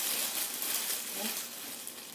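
Clear cellophane gift-basket wrap crinkling as it is gathered and twisted at the top of the basket, loudest in the first second and then dying down.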